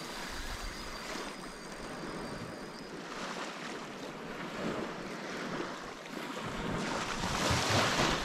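Small waves washing onto a sandy beach, with wind buffeting the microphone; the surf grows a little louder near the end.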